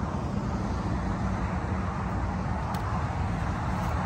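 Steady low rumble of outdoor background noise with a fainter hiss above it, no distinct event standing out.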